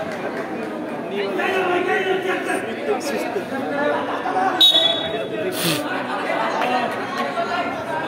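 Many voices chattering and calling out in a large hall. About four and a half seconds in there is a short, shrill whistle blast, fitting a referee's whistle for the restart, and a sharp knock follows about a second later.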